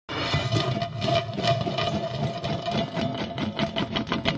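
Produced sound effect for a spinning logo animation: a rapid mechanical rattle of clicks over a steady held tone. It starts suddenly, and the clicks grow more distinct and closely spaced near the end.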